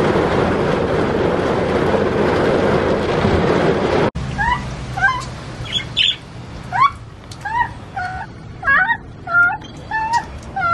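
Steady noise inside a car cabin that cuts off abruptly about four seconds in. Budgerigars then chirp in short, quick, repeated calls, several a second.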